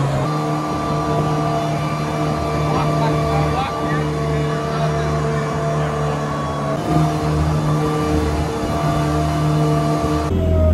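Jet boat's engine running steadily at speed, its note shifting slightly a few times, with water rushing past the hull.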